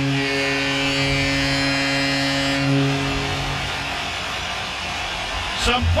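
Arena goal horn sounding one long, steady blast after an empty-net goal. It fades out about three and a half seconds in.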